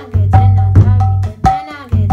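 Mridanga played in a slow beat: sharp, ringing strokes on the small treble head over a deep bass tone from the large head that rings on between strokes.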